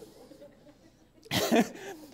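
A man coughing close to a microphone: a short, sharp double cough a little past halfway, after a faint, quiet stretch.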